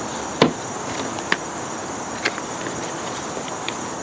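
A small cardboard box being opened and a plastic charge controller with its wires lifted out: a few sharp clicks and taps, about one a second, over a steady high insect chorus.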